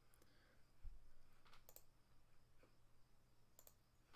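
Near silence with a few faint computer mouse clicks and a soft low thump about a second in.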